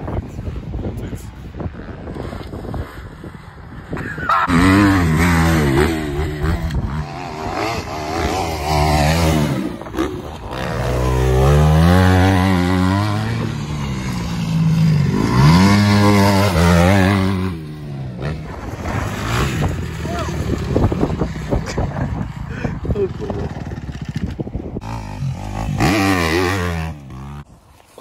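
Dirt bike engine revving up and down over and over as it is ridden round a motocross track. It is loudest from a few seconds in for about a quarter of a minute, then quieter and rougher.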